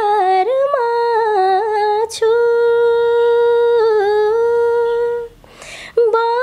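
A woman singing unaccompanied, a slow, mournful melody in long held notes with gentle wavering. She takes a short breath about two seconds in and a longer one near the end.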